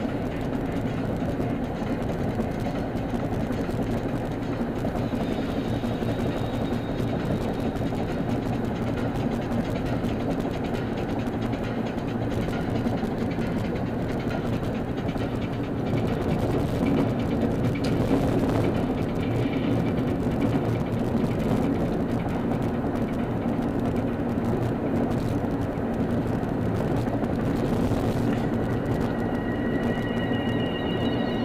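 Steady road and engine noise heard from inside a car cruising on a freeway, getting a little louder about halfway through.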